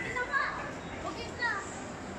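Young people's voices: short, high-pitched exclamations and chatter over a steady background murmur, several brief outbursts in two seconds.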